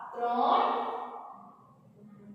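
A woman's voice: one drawn-out utterance that trails off about a second in, leaving quiet room tone.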